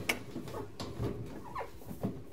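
A wire hamster cage rattling lightly, with a few small clicks, as it is pressed down onto its plastic base and its clips are worked shut; the clips are hard to click.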